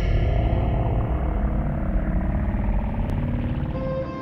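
Deep, steady rumbling explosion sound effect, the low roar of a fireball, holding loud and easing slightly near the end.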